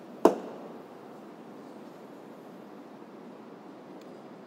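Rear liftgate latch of a 2016 Dodge Grand Caravan released by hand: one sharp click just after the start, with a short ring after it, as the gate unlatches.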